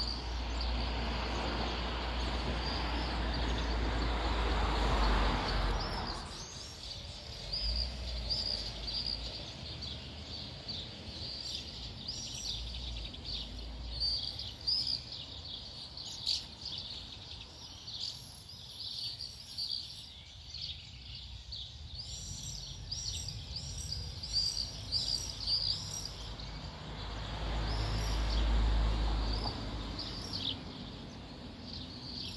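Common swifts and house martins calling: many short, shrill, high-pitched calls repeated throughout. A broad rushing noise with a low rumble fills the first six seconds and comes back near the end.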